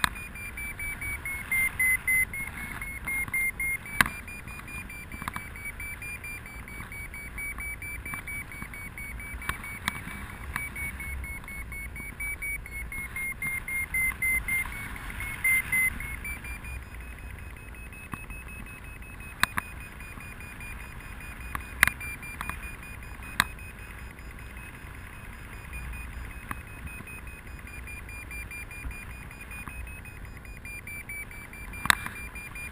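A glider's audio variometer sounds one electronic tone whose pitch drifts slowly up and down with the climb and sink. It breaks into quick pulsed beeps about two seconds in and again around thirteen to fifteen seconds in. A few sharp clicks and a faint rumble of air sit underneath.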